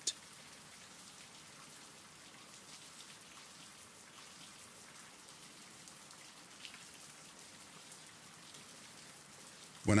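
Faint, steady rain falling, an even hiss of rain sounds.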